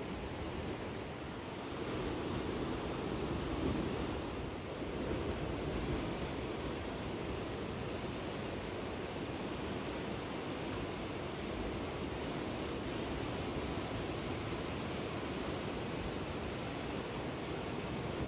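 A steady high-pitched insect chorus drones without a break over a low rushing wash of sea and wind noise. The wash swells a little between about two and five seconds in.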